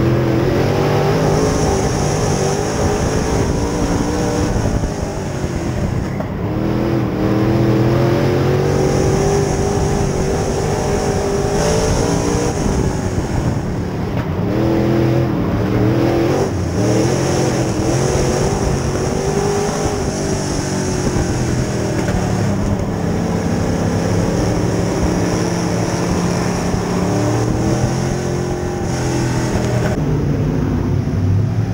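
Street stock race car's engine heard from inside the cockpit, its pitch climbing under throttle and dropping off again in a repeating cycle as it lifts and accelerates around a dirt oval.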